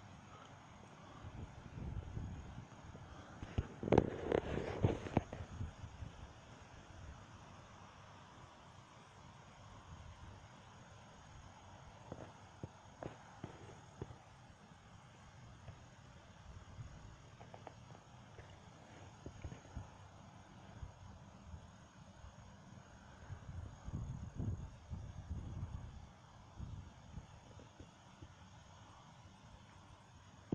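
Wind gusting across the camera's microphone: low rumbling buffets that swell and fade, the strongest about four seconds in and another about twenty-four seconds in, with scattered light knocks.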